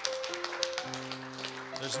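Keyboard holding a soft sustained chord, with more notes joining about a second in, and a few light taps over it.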